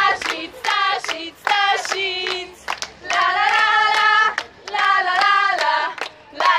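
A group of young people singing together in high voices, in short phrases broken by brief pauses, with sharp hand claps in time with the song.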